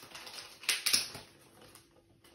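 Crinkly rustling of a bagged comic book being handled, with a pair of sharp crackles a little before the one-second mark.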